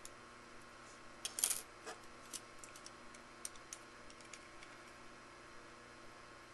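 Light metallic clicks and taps from handling small metal parts and tools, a caliper against an aluminum cap. There is a quick cluster of clicks about a second and a half in, then scattered lighter ticks.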